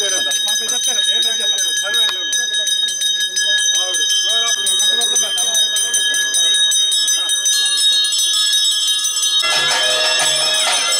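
Metal bells ringing and jingling rapidly and without a break, over the voices of a crowd. Music with a low repeating beat comes in near the end.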